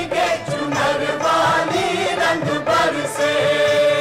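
A Hindi film song: a group of voices singing together over instrumental backing, with a long held note near the end.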